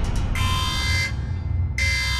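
Intro logo sound effect: a steady deep rumble with a bright, buzzing tone swelling in over it twice, each time for about three quarters of a second.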